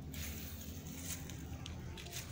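Faint handling noise from a hand-held phone camera being carried and panned, with a few soft scuffs and clicks over a steady low rumble.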